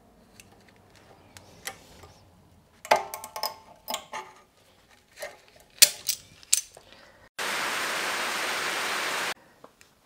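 Metal hand tools clicking and knocking against the drum-brake parking brake shoes and their springs, with a couple of short ringing metal taps. Near the end a steady hiss lasts about two seconds and cuts off abruptly.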